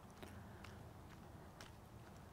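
Near silence with faint ticks about twice a second: bare feet stepping on a concrete pool deck.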